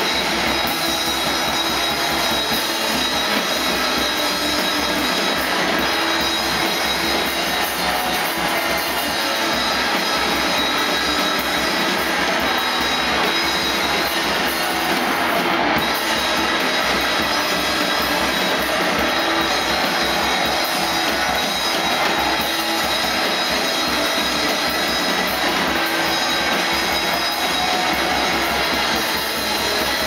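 Noise rock band playing live: a loud, unbroken wall of distorted noise with many sustained high feedback-like tones, over drums and cymbals.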